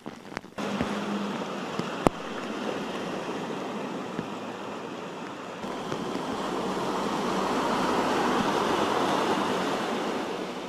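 Heavy rescue truck driving through deep floodwater: a loud wash of surging, splashing water over a low engine rumble, building as the truck passes. A steady rush of water or rain noise comes before it, broken by a sharp click about two seconds in.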